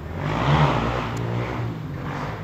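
A motor vehicle going by, its engine and road noise swelling about half a second in and then slowly fading.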